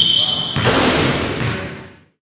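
Basketball game in a gymnasium: a high sneaker squeak on the hardwood floor, the ball thumping, and players shouting in the echoing hall. The sound fades out near the end.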